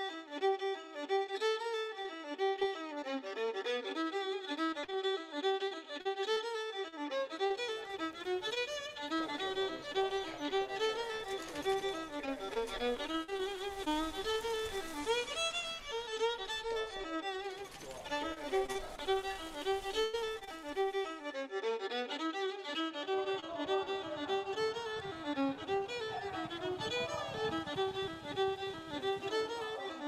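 Fiddle music: a fast violin tune of quick running notes that rise and fall, playing without a break.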